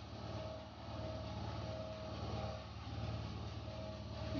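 Steady engine hum with a regular low pulsing, from the engine-driven pump that feeds the sanitiser spray hose.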